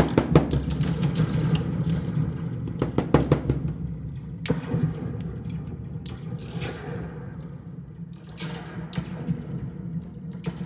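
Live drums struck by hand with a stick: a bass drum lying on its side and a smaller hand drum. The knocks and thuds come in irregular clusters, busy in the first few seconds and sparser later.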